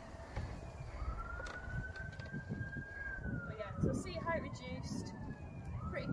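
A faint emergency-vehicle siren wailing, its pitch rising slowly for about two seconds, falling for about three, then starting to rise again near the end, over a low rumble.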